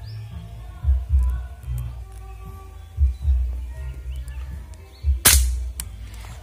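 Background music with a deep, repeating beat. About five seconds in, a single sharp air rifle shot rings out, the loudest sound here, followed half a second later by a fainter crack.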